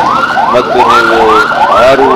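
Loud emergency-vehicle siren in a fast yelp, a rising whoop repeating about three times a second, with a man talking beneath it.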